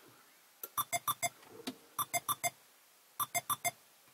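Car warning chime sounding just after the ignition is switched off: three bursts of about four quick, clear beeps each, the bursts repeating roughly every second and a quarter.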